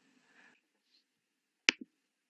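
Near silence, then a single sharp click about three quarters of the way through, with a fainter, duller tap straight after it: a computer mouse button pressed and released, advancing the lesson slides.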